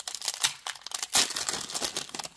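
Foil trading-card pack wrapper being torn open and crinkled by hand: a run of sharp crackles, loudest about half a second and just over a second in.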